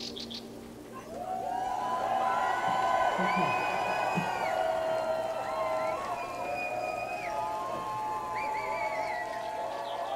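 Festival crowd cheering, whooping and whistling at the end of the song, starting about a second in.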